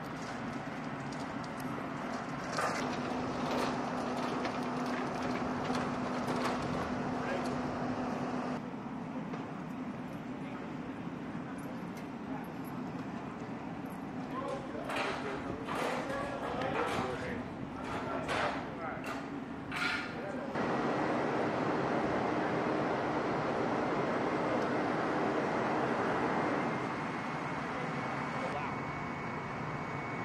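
Steady machinery noise of an airfield flight line, changing in level at a couple of cuts. Indistinct voices are heard, and a cluster of sharp clicks and knocks comes in the middle.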